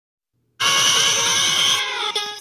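Silence, then about half a second in a loud, dense electronic intro sound starts abruptly, with many high tones over a fast rattling buzz and a rising tone, easing off near the end.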